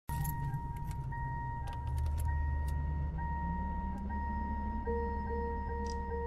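Car sound effects at the opening of the recording: a car's warning chime dinging steadily over a low idling engine, with scattered jangling key clicks. A low sustained musical note comes in near the end.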